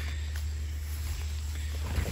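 Steady low rumble under a faint even hiss of outdoor background noise, with no distinct event standing out.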